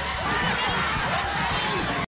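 Cartoon characters yelling and shouting without clear words, several voices overlapping.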